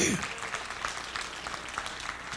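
Congregation applauding: faint, steady clapping of many hands.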